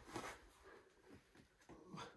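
Near silence, with a brief faint hiss just after the start and a short faint voice-like sound near the end.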